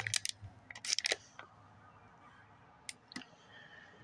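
Light handling noise: a few short rustles and clicks in the first second and a half, then a faint hush with two short ticks about three seconds in.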